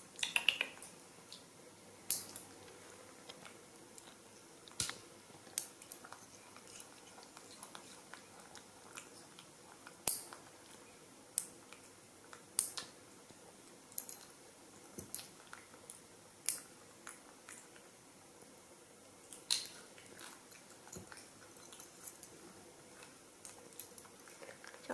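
Metal lever nail clipper cutting a baby monkey's fingernails: a sharp click with each snip, at irregular intervals a second to several seconds apart.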